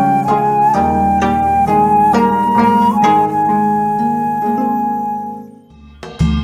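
Gayageum, the Korean plucked zither, playing a slow tune over a held melody line and a low bass backing; the music fades out near the end.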